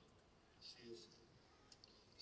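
Near silence: quiet room tone, with a faint voice for a moment about half a second in and a couple of faint clicks near the end.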